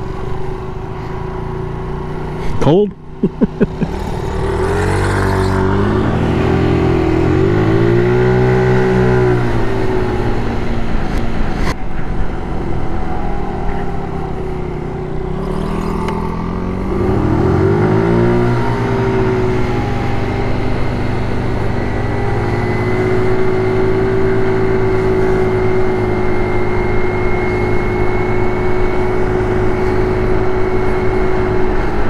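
GY6 scooter's single-cylinder four-stroke engine pulling away from a stop and accelerating, the engine note rising and easing off twice, then holding a steady drone at cruising speed. A short sharp rising sweep with clicks comes about three seconds in.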